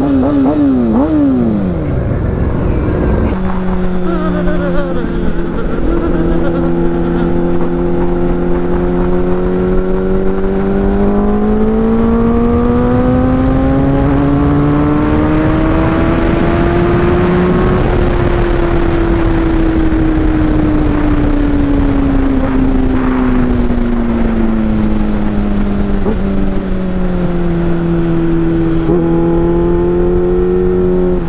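Kawasaki ZX-6R inline-four engine heard from the saddle, with wind rushing over the microphone. It gives a few quick throttle blips at the start, then runs at a steady note. Its pitch rises smoothly for several seconds as the bike accelerates without a gearchange, then slowly falls back and steadies near the end.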